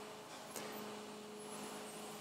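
Faint steady electrical hum of two thin tones over a low hiss, with one faint click about half a second in.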